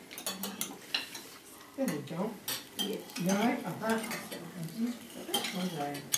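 Cutlery clinking and scraping on plates at a crowded dinner table, a steady scatter of small clicks. Voices talk in the background from about two seconds in.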